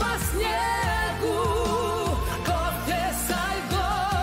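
A live pop ballad, sung with wide vibrato on long held notes over an orchestral accompaniment.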